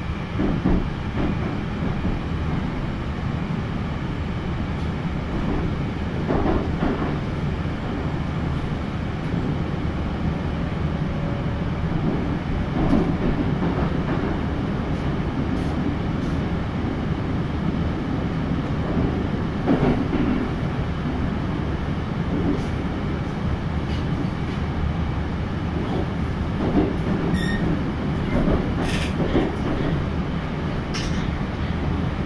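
Moscow Metro train running between stations, heard from inside the carriage: a steady low rumble of the running train, with occasional sharp clicks, a few of them near the end.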